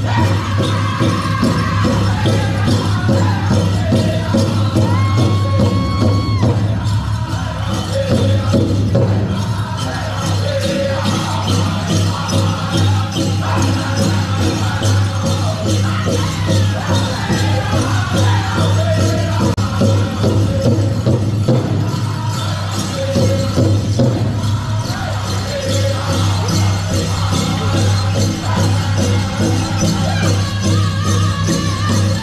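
A Northern-style powwow drum group sings a contest song over a large hand drum struck in a steady beat, with the jingle of dancers' bells mixed in.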